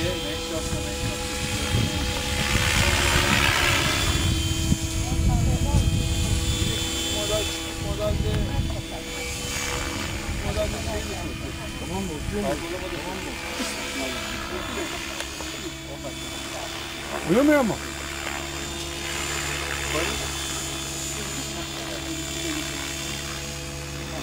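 GAUI X7 electric radio-controlled helicopter flying overhead: a steady whine of motor and rotor blades, with people talking nearby.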